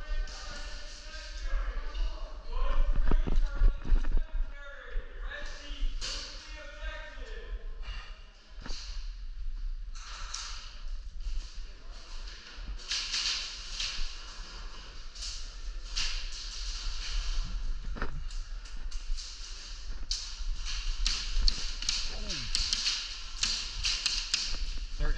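Indistinct voices in a large hall, then scattered sharp taps and clicks, some in quick clusters, from indoor airsoft play.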